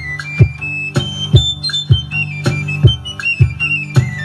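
A txirula (Basque three-hole pipe) playing a high, quick melody while the same player beats a ttun-ttun (string drum) with a stick. Each stroke sets the strings sounding a low drone, two to three strokes a second.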